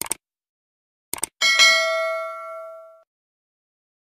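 Subscribe-button animation sound effect: a click, then two quick clicks about a second in, followed by a bright bell-like notification ding that rings out and fades over about a second and a half.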